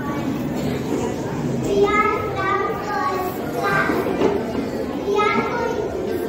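Young children's voices chattering and talking over one another, with the higher voices of several girls standing out every second or so.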